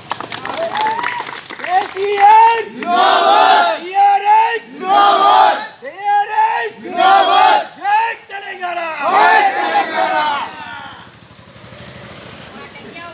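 A group of men chanting a political slogan together in rhythmic unison shouts, about seven shouts roughly a second apart, after a quick run of sharp clicks at the start; the chanting stops shortly before the end.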